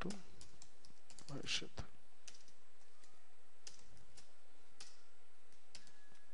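Computer keyboard being typed on: single keystrokes at an uneven, unhurried pace, about a dozen scattered clicks, over a steady background hiss.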